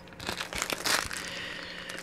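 Small plastic bags of beads crinkling and rustling as they are handled and one is picked up and opened, with a few light clicks.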